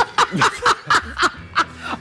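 People laughing, a quick run of repeated "ha" sounds, about five a second.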